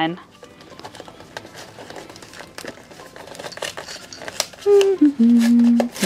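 A small cardboard box being pulled and torn open by hand, a run of faint crinkles and small tearing clicks. Near the end comes a louder, brief hum from a woman's voice.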